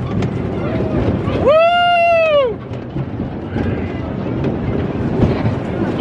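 A rider's high falsetto whoop, rising then falling, about a second and a half in, with a shorter fainter one before it, over the steady rumble and wind noise of a spinning Tilt-A-Whirl car.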